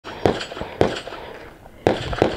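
Handgun shots from a competitor firing a practical shooting stage: three sharp shots, the first two about half a second apart and the third about a second later, each with a short echo.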